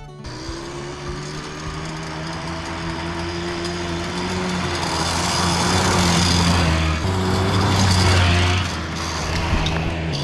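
Tri-Zinger mini three-wheeler's small engine running as it is ridden across the yard. It grows louder to a peak about six to eight seconds in, then drops off near the end.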